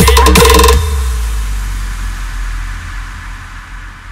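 A DJ's EDM drop, with heavy bass, kick drums and a repeating high note, cuts off under a second in. A low bass rumble and reverb tail follow and fade steadily away: the end of the track.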